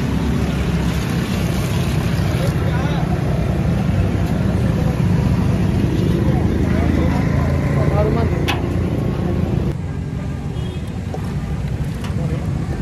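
Steady road traffic noise mixed with the indistinct chatter of a crowd, with one sharp click about eight and a half seconds in. The sound turns a little quieter near the end.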